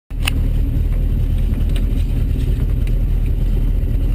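Volvo 244 GLT rally car's engine idling steadily, heard from inside the cabin, with a short click about a quarter second in.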